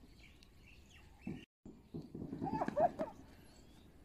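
Animal calls: a short cry a little over a second in, then a louder run of short cries between about two and three seconds in.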